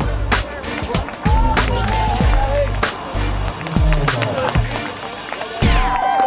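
Background music with a steady drum beat and a bass line that steps down in pitch about two-thirds of the way through.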